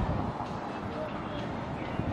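Steady low rumble of outdoor background noise, with faint, indistinct voices.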